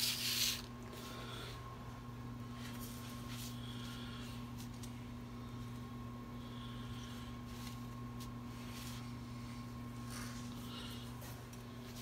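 Handling noises from someone working under a car: a brief loud rustle right at the start, then scattered small clicks and rustles over a steady low hum.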